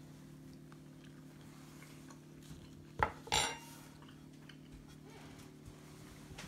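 Metal cutlery clinking against a ceramic plate: a sharp click about three seconds in, then a short ringing clink.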